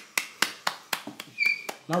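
Hand claps in a quick, steady rhythm, about four claps a second, eight or so in a row, stopping just before speech resumes.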